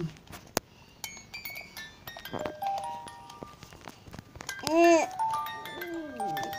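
Battery-powered musical baby toy playing a simple electronic melody of short, steady beeping notes. About five seconds in, a loud squeal rises and falls in pitch over the tune.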